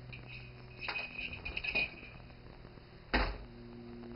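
Plastic baby toys clicking and rattling for about a second as they are handled, then a single sharp knock about three seconds in.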